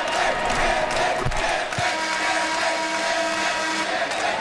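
Basketball arena crowd noise with voices chanting. About halfway through, a few steady held tones sound over it, and there are a couple of low thumps a little past a second in.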